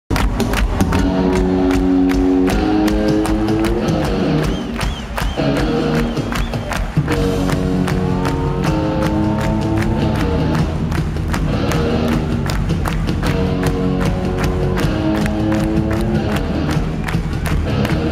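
Live punk rock band playing loud, with electric guitar chords over a steady drum beat. The music thins out briefly about five seconds in, then the full band comes back in on a big hit about two seconds later.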